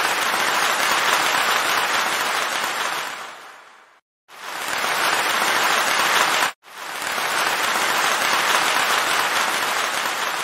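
Crowd applause laid over the pictures, repeated in segments that swell in and fade out, with a short silence about four seconds in and a sudden brief break about six and a half seconds in.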